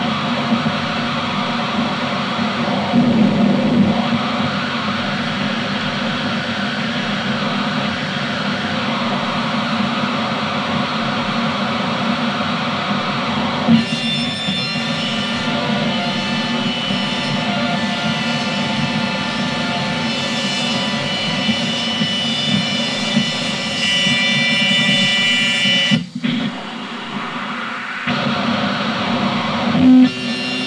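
Noisecore track: a dense, distorted wall of noise with a guitar-like grind. About halfway through it shifts to a texture laced with steady high squealing tones, then dips briefly near the end before the full noise returns.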